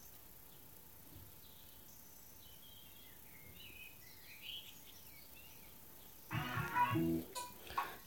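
Faint bird chirps in the background over near-quiet outdoor air, then about six seconds in a short stretch of a pitched human voice for a second or so.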